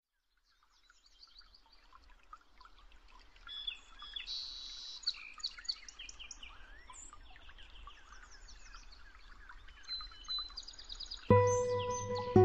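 A chorus of several birds chirping and calling, with many short, quick notes and whistles, fading in after a moment of silence. Near the end, slow music with held tones comes in over it.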